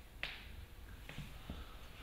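Quiet room tone with a low hum and a few faint, sharp clicks: one clearer click about a quarter second in, then smaller ones around the middle and later.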